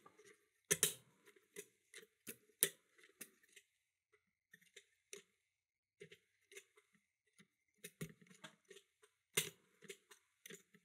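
Lever pick working inside a Yale 5-lever mortice lock: scattered small metallic clicks, irregularly spaced, as the levers are lifted and snap back. The levers pop up and make noise without binding or setting, a sign that none is catching under the heavy tension.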